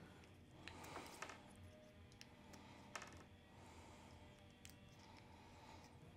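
Near silence broken by a few faint, scattered clicks: small bushings being pushed out of a plastic suspension knuckle with a hex driver and dropping onto a wooden workbench.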